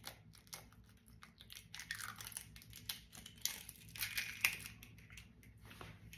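An eggshell being cracked and pulled apart by hand: faint, irregular crackling with small clicks, loudest about halfway through.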